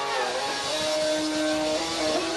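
Live rock band playing loud, with distorted electric guitar holding notes after a downward bend near the start, over the noise of a packed pub crowd.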